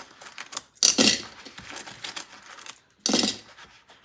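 Loose coins jingling and clinking in a wallet's zippered change pocket as they are dug out by hand, in two louder spells about a second in and three seconds in.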